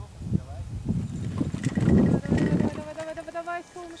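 Running footsteps thudding on a grassy slope during a hang glider's launch run. About three seconds in, a person lets out a long held whoop as the glider lifts off.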